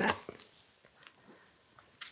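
A few faint, scattered clicks and scrapes of a palette knife working thick gloss gel medium, scooping it from the jar and spreading it on a plastic sheet; otherwise near quiet.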